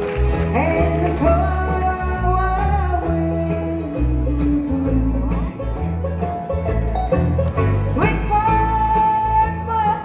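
Live bluegrass band playing an instrumental passage. A fiddle carries the lead with slides and held notes over strummed acoustic guitars and a steady bass line.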